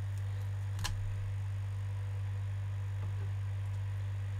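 Steady low electrical mains hum, with a single click a little under a second in.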